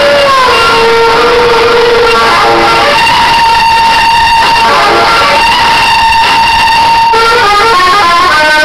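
A very loud woman's singing voice holding long notes: a wavering note for the first couple of seconds, then one high note held steady for about four seconds before the melody moves on near the end.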